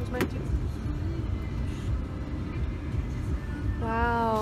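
Steady low road rumble inside the cabin of a moving passenger van, with one sharp click just after the start.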